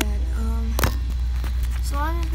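Phone being handled and moved into place, giving scattered clicks and knocks on the microphone over a steady low hum, with a brief hummed voice sound about half a second in.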